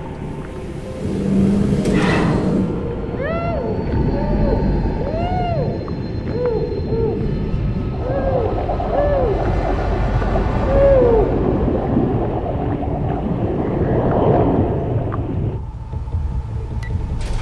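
Muffled underwater cries from a woman trapped beneath the water: a string of short rising-and-falling wails over a steady low underwater rumble, with bubbling as she breathes out.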